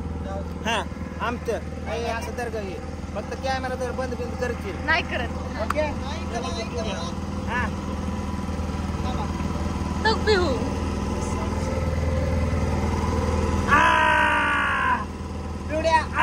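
Boat engine running with a steady low drone under scattered voices, and one loud, drawn-out vocal cry near the end.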